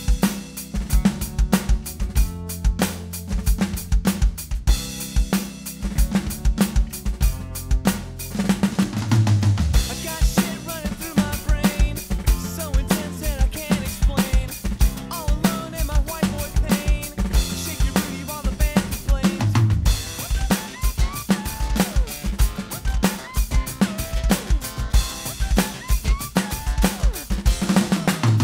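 Roland electronic drum kit played in a steady rock beat, with kick drum, snare and cymbals, along with the song's recorded backing music.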